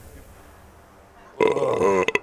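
A man lets out a loud, drawn-out belch about one and a half seconds in, after a quiet stretch.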